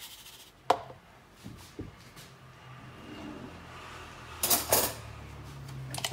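Plastic kitchenware, a mixing bowl and a blender's chopper jar, being handled on a wooden worktop: a sharp knock about a second in, a few light clicks, and a short clatter near the end, over a low steady hum.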